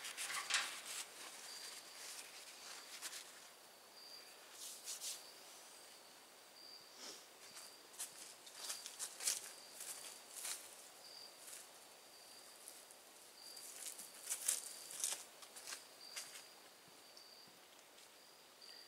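Quiet outdoor background with an insect chirping in short, high-pitched bursts that repeat steadily. Scattered light rustles and clicks of handling are heard, with a few near the start as a paper towel wipes a tank fitting.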